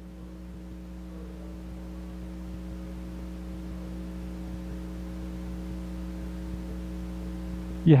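Steady low electrical hum, a buzz with several steady overtones, running without change under a pause in the talk. A man's voice begins right at the end.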